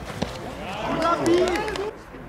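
A man shouting on the pitch, with one short knock about a quarter of a second in. The sound drops off abruptly at an edit just before the end.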